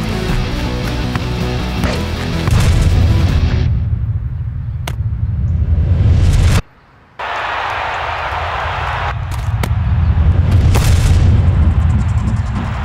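Dramatic cartoon score with a deep rumbling boom building under it from about two and a half seconds in. The sound cuts out abruptly for about half a second around six and a half seconds, then comes back with a hissing rush over the music.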